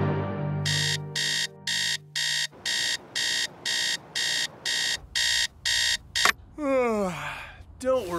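Electronic alarm clock beeping about twice a second for some five seconds, then stopping. Near the end comes a man's long yawn falling in pitch as he wakes, over the last of a music cue fading out at the start.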